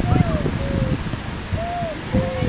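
Children's voices calling out in long, drawn-out shouts, several following one another. A heavy low rumble of wind buffets the microphone underneath.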